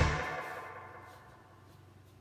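The end of a background music track: its last chord rings out and fades away over about a second and a half, leaving quiet room tone.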